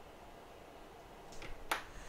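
Faint steady room hiss, then a single sharp click near the end from a small hand tool at the repair bench.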